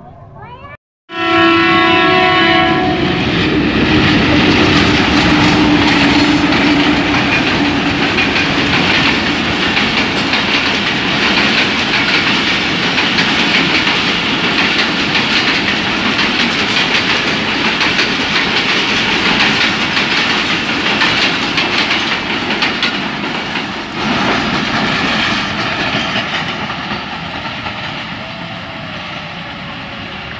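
A locomotive horn sounds for about two seconds, straight after a brief dropout. Then a passenger train passes close by: the steady rumble and clatter of the coaches on the rails, easing near the end.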